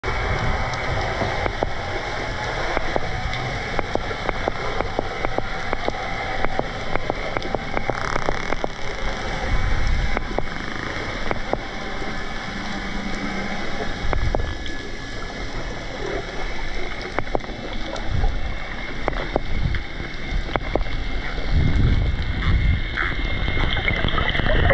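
Underwater sound picked up by a camera in its housing among swimming dolphins: a steady hiss with many short, sharp clicks scattered throughout and occasional low whooshing rumbles of water movement.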